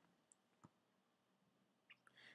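Near silence: room tone with a couple of faint short clicks, about a third and two thirds of a second in.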